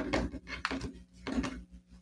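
A brief pause in a woman's spoken narration, with only faint, short low-level noises until her voice resumes just after.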